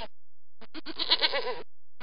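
A goat bleating: one wavering call about a second long, starting just over half a second in, with the next bleat beginning at the very end.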